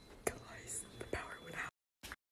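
Faint whispering voices with two sharp clicks, then the sound cuts off to dead silence near the end.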